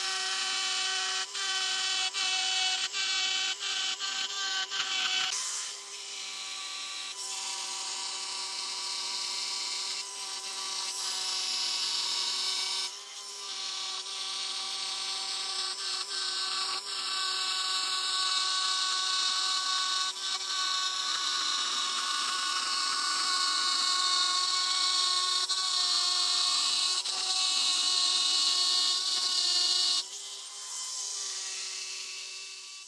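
Air die grinder running at speed, its burr cutting zigzag oil grooves into the cast-iron way surface of a milling machine saddle: a steady whine with grinding noise, easing off briefly twice.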